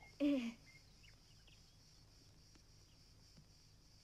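A brief voiced cry or exclamation about a quarter second in, its pitch dropping at the end. After it only a faint steady high hiss with a few soft ticks.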